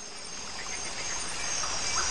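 Ambient nature sound of birds chirping over a steady hiss, fading in gradually.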